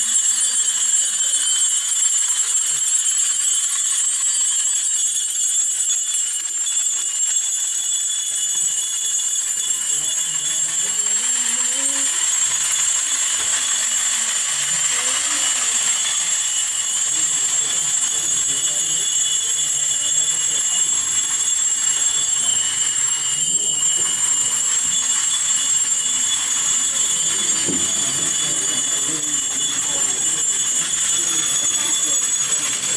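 Small metal liturgical bells jingling steadily, the bells of the procession's censer. Men's voices chant low from about nine seconds in.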